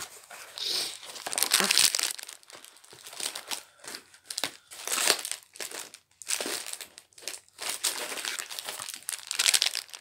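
Clear plastic packaging crinkling in irregular bursts as hands work it open.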